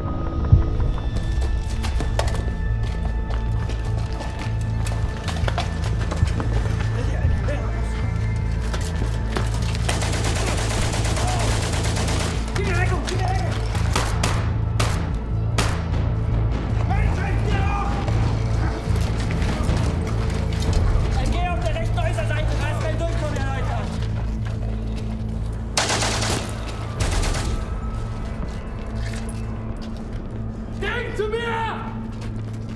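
Battle sound track of gunfire, single shots and machine-gun bursts, over a steady low music score, with men's shouts now and then.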